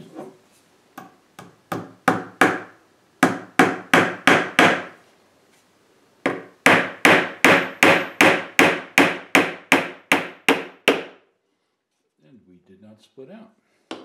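Small hammer driving a one-inch brad nail into the corner of a pine box frame: a few light tapping blows, then a run of about five quick strikes, and a longer run of about three even blows a second for some four seconds.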